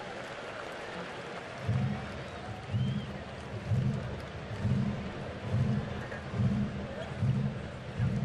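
Ballpark crowd murmur, with a low drum-like beat starting about two seconds in and repeating about once a second.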